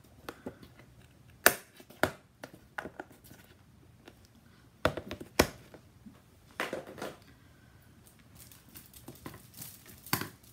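Card-making supplies being handled on a craft mat: scattered sharp clicks and taps of plastic and card being picked up and set down, with some crinkling. The loudest clicks come about one and a half and five and a half seconds in.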